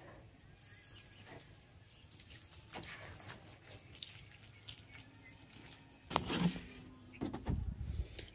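Fertilizer water poured from a plastic jug onto potting soil in planter pots: a faint trickle and patter. About six and seven seconds in there are a couple of louder brief handling noises.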